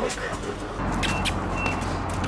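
A bus's folding entrance door being opened, with a few short clicks and knocks about a second in, over a low steady hum.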